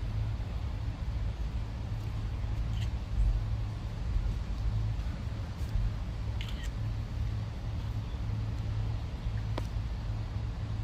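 Steady low rumble of distant road traffic, with a few faint camera shutter clicks scattered through.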